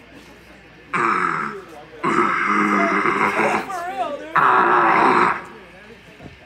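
Harsh guttural screams into a PA microphone: three loud, rough bursts with short gaps between them, the kind of vocal check a heavy band's singer gives before a set.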